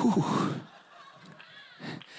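A man's short, strained vocal cry into a microphone, about half a second long with a falling pitch, a mock cry of shock. It is followed by quiet and a faint breath near the end.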